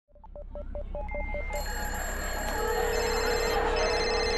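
Electronic intro sound effects fading in. A rapid run of short phone-like beeps lasts about the first second and a half. Then several steady electronic tones swell in and are held over a rising background wash.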